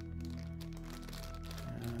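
Soft background music with steady sustained low notes, and faint crinkling of a clear plastic parts bag being handled.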